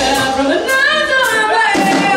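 A live blues band playing, with a woman singing long, bending notes over electric guitar, bass, drums and keyboard, and cymbals struck through it.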